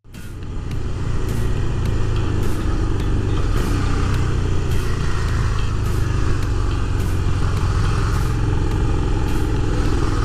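Motorcycle engine running steadily at low speed through traffic, heard from the rider's helmet camera with a rush of wind over the microphone. The sound comes up over the first second and then holds.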